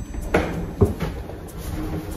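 Two short knocks about half a second apart.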